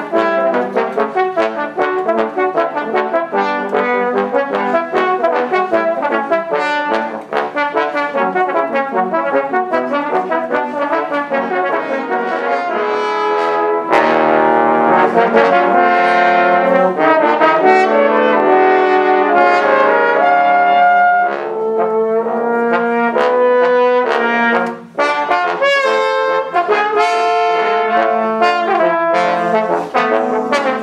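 Trombone quartet playing film music in close harmony: a run of quick, short notes, then louder held chords about halfway through, then shorter phrases broken by a brief pause.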